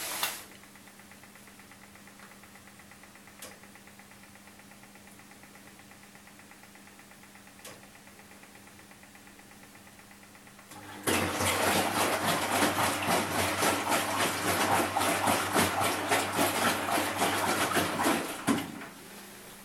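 Front-loading washing machine during its rinse phases: a quiet, steady low hum with a couple of faint clicks, then about eleven seconds in a sudden loud rush of water and sloshing as the drum turns the wet laundry.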